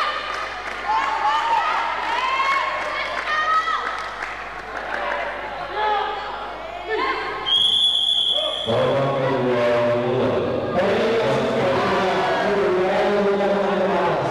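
Spectators in a large hall shouting and chanting in support of the fighters, with one steady high-pitched signal tone about a second long near the middle. After the tone the crowd voices grow thicker and louder.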